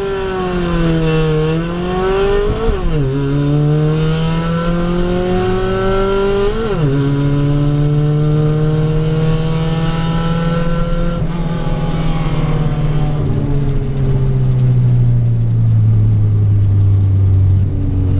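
Car engine heard from inside the cabin, accelerating hard through the gears on a drag run: the revs climb, drop sharply at gear changes about three and seven seconds in, and climb again. From about eleven seconds the engine note falls slowly as the car slows.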